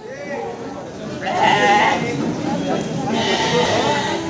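Goats bleating several times, wavering calls over a steady background of people talking in a crowded livestock pen.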